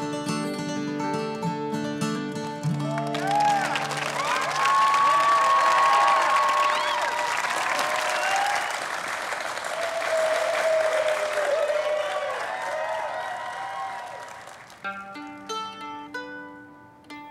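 An acoustic guitar band's closing chord rings out for about three seconds. Then an audience breaks into loud clapping and cheering with whoops, which fades after about eleven seconds. Near the end, plucked guitar notes start again.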